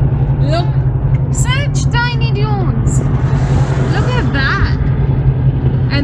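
Steady low drone of a Nissan Xterra cruising on a highway, heard from inside the cabin, with short high-pitched voices over it.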